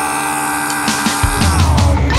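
Heavy stoner doom rock: a held, distorted guitar chord rings out, then the bass and full band come back in heavily a little over halfway through.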